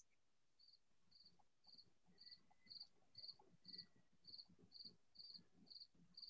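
An insect chirping faintly and evenly, about two short high chirps a second.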